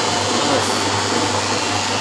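Single-disc floor machine running steadily, its motor humming evenly as it buffs oil into oak parquet on a cloth pad.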